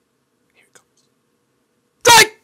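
Near silence: room tone, with a faint brief whisper-like sound about half a second in.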